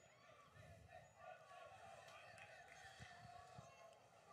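Near silence, with faint distant voices and chatter in the background.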